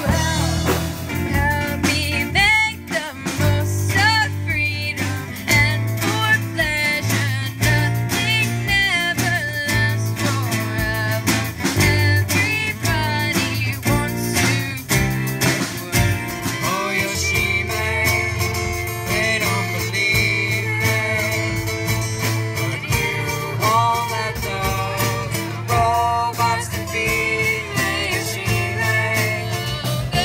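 Live amateur rock band music with electric guitar, bass and drums, and a singer. About halfway through it cuts to a different band playing a guitar-led song with a woman singing.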